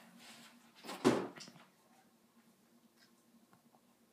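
A single thump with a brief rustle about a second in, then quiet room tone.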